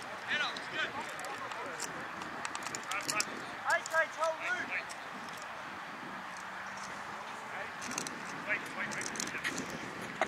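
Distant shouted calls from footballers on the field, in short bursts near the start, around four seconds in and again near the end, over a steady outdoor background hiss with a few sharp clicks.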